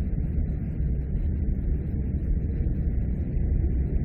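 Steady low rumble with a fainter hiss above it: constant background noise on the recording, with no change through the pause in speech.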